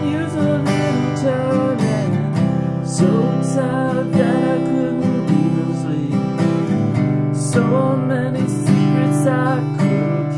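Faith steel-string acoustic guitar strummed steadily through a progression of open chords: C major, G with B in the bass, then A minor.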